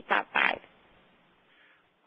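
Two short, noisy vocal sounds from a person on a telephone conference line in the first half second, then a pause of near silence on the line.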